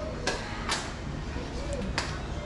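Pholourie batter being worked by hand in a stainless steel bowl: a few short sharp knocks and slaps, with faint voices underneath.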